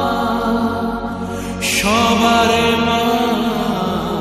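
Hindu devotional chant music: a voice holds long, drawn-out notes over a steady drone. About one and a half seconds in there is a short bright swell, then the voice moves onto a new held note.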